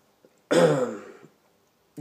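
A man clears his throat once, a loud sound a little under a second long.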